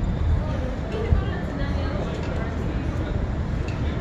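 Indistinct voices of people talking over a continuous low rumble.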